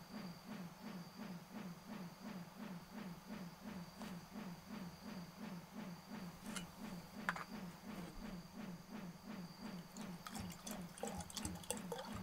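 Clear liquor poured from a glass bottle into a glass: a couple of sharp glass clinks past the middle, then trickling and splashing into the glass near the end. Under it runs a low rhythmic pulse about three times a second and a faint steady high tone.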